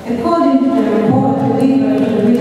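Singing in long held notes, with a drop in pitch about halfway through.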